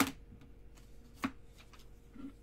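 Two sharp clacks of hard plastic graded-card slabs being handled and lifted from a box. The first clack is the loudest, and the second comes about a second later, with a few faint ticks between them.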